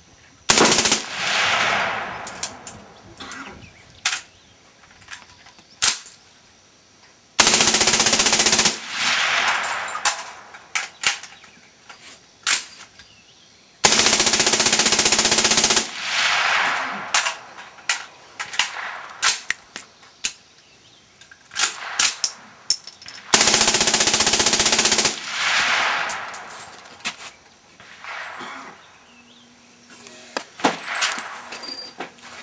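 M16 rifle firing 5.56 mm rounds on full automatic: magazine dumps in three long continuous bursts of about one and a half to two seconds each, after a brief report near the start. Each burst is followed by an echo that rolls back off the range for a few seconds.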